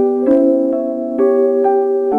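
Slow instrumental lullaby on soft piano: gentle single melody notes struck about every half second over a sustained low note.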